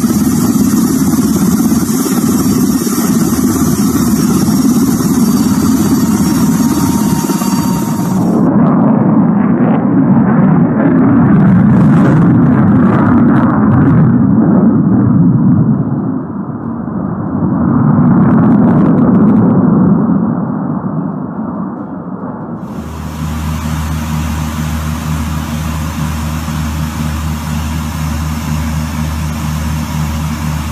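Steady rotor and engine noise of a military helicopter in flight. About a third of the way in it changes to the jet noise of an F-22 Raptor, swelling twice as the fighter passes. Near the end comes a steady, quieter drone with a low pitched hum: aircraft engines heard from inside the cockpit on the landing approach.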